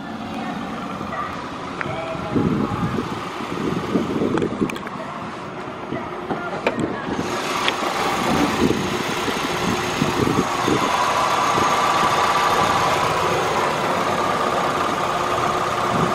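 A 2014 Hyundai Avante MD's engine idling steadily, heard under the open bonnet. About seven seconds in the sound grows louder and brighter.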